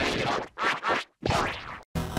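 Digitally distorted logo sound effects: three dense, noisy sweeps that break off briefly about half a second in, again around the middle, and just before the end.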